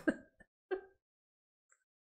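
The fading end of a man's excited exclamation, then one short nonverbal sound from his throat, like a chuckle or a throat clearing, about three-quarters of a second in. Then silence.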